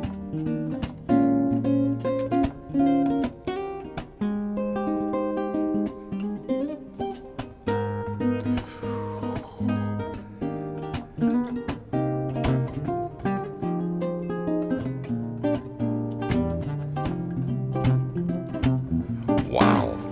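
Solo Godin Multiac nylon-string guitar played unaccompanied: a plucked melody of single notes over lower bass notes and chords. There is one falling slide of pitch about eight seconds in.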